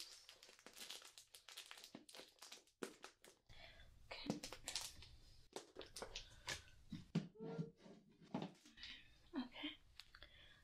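Close handling noises: crinkling and rustling as felting wool and its plastic-wrapped packet are pushed into a plastic storage box. Light clicks and knocks come as the box is handled and set down on a shelf.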